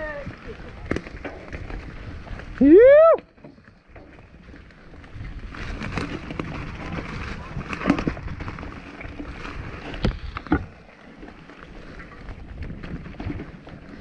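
Mountain bike rolling down a rough dirt trail: a steady rushing noise from tyres and riding, with scattered knocks and rattles from the bike over bumps, the sharpest about a second in, about 8 seconds in and about 10 seconds in.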